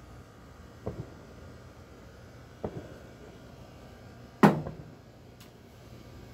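A man drinking from a glass beer bottle: a couple of soft gulps, then one sharp, loud knock about four and a half seconds in, with a fainter click after it.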